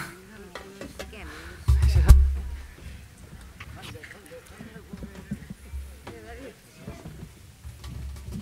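Handling noise from an open stage microphone as people move around it: a loud low thump and rumble about two seconds in, scattered clicks and knocks, and faint chatter over a steady low hum.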